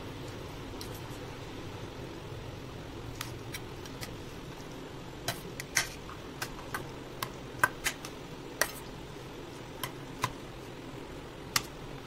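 Metal spoon clinking and tapping against a stainless steel bowl while stirring a chopped salad: irregular sharp clinks, sparse at first and most frequent in the middle seconds, over a steady low room hum.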